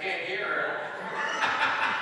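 A woman talking into a handheld microphone, with chuckling and light laughter.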